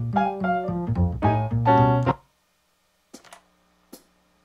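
Kawai ES8 digital piano playing a held chord and then a quick run of notes with a strong deep bass line, played back through speakers. The playing stops about two seconds in, and a few faint clicks follow.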